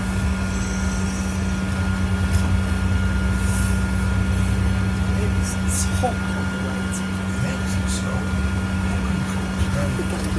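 Cabin noise on the upper deck of a moving double-decker bus: a steady low drone and road rumble with a thin constant whine, and light rattles from the bodywork now and then.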